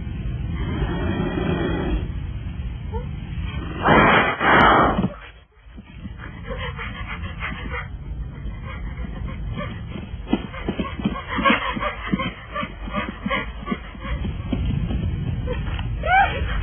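Animal cries from a bear cub facing a puma: whimpers and yelps, with one loud snarl about four seconds in and a rising cry near the end.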